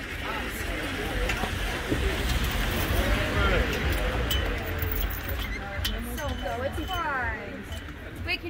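Indistinct voices talking over a steady low rumble, with a few light metallic clinks from the harness chains of a hitched pair of carriage horses.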